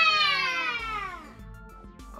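Children's drawn-out cheer of "Yeah!", held and sliding slowly down in pitch, fading out about a second and a half in.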